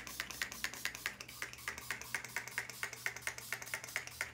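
Maybelline Lasting Fix setting spray misted onto the face from a pump bottle: a rapid run of short spritzes, about seven a second.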